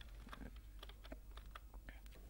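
Near silence: a low steady hum with faint, scattered clicks, about a dozen across two seconds.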